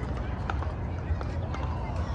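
Pickleball paddles hitting the ball with a sharp pop, a couple of times, over faint talk from players and a steady low rumble.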